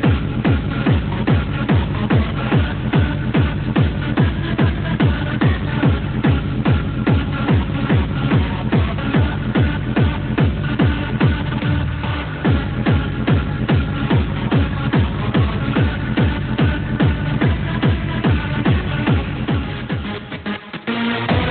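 Gabber hardcore techno: a fast, distorted kick drum pounding at about three beats a second, with synth tones above it.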